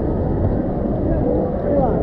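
Crowd noise of an indoor waterpark hall: many overlapping children's voices and shouts over a steady low rush of water, with no single voice standing out.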